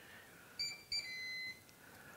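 T-fal OptiGrill's electronic beeper sounding three times about halfway in: two short beeps, then a longer, slightly lower one. The beeps signal that the grill has finished preheating and is ready to be opened.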